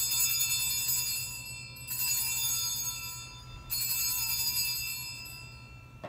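Altar bells (Sanctus bells) rung three times, about two seconds apart, each ring fading out before the next. The ringing marks the elevation of the host at the consecration.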